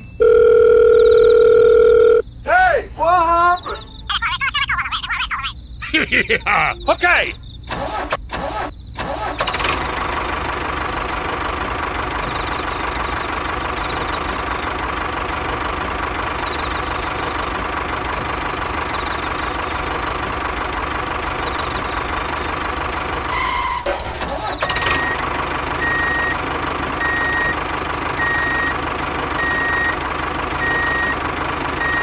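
Squeaky cartoon voice sound effects for the first several seconds, then a miniature hand tractor's engine sound running steadily. An evenly repeating reversing beep joins it near the end.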